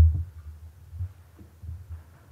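A few dull low thumps picked up by the pulpit microphone, the loudest at the very start, as the preacher handles the lectern and steps away from it.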